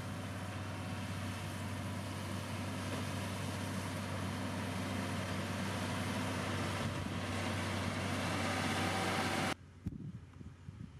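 Motor grader's diesel engine running with a steady drone while it moves with its blade in the gravel, growing gradually louder as it comes closer. The sound cuts off abruptly near the end.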